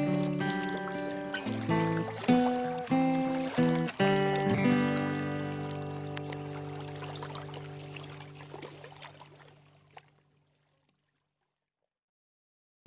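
Solo acoustic guitar picking a few closing notes, then a final chord that rings out and slowly fades away, ending the song. About ten seconds in, it falls silent after a faint click.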